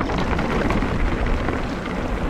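Calibre Triple B mountain bike's knobbly tyres rolling fast over loose gravel, with wind buffeting the camera microphone. Scattered clicks and rattles from the bike and stones.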